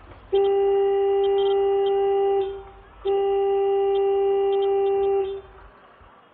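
A horn sounding two long, steady blasts of one unchanging pitch, each about two seconds long.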